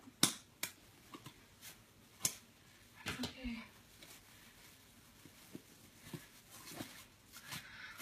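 Scattered light clicks and rustles of packaging being handled as parts of a fursuit are unpacked from their box, a few sharp snaps in the first three seconds and one more near the end.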